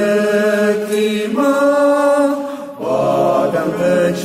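Voices singing a slow hymn in long held notes, moving to a new note roughly every one and a half seconds, with a brief breath-break just before three seconds in.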